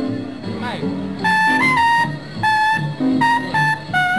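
Small-group jazz recording: a horn plays a phrase of short, held high notes, sliding up into one of them, over a lower accompaniment.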